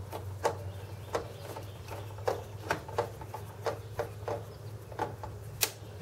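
Screwdriver driving a screw down into the plastic mounting posts of a CPU fan shroud: irregular small clicks and ticks, roughly two a second, over a steady low hum. The super-glued plastic posts are cracking under the screw.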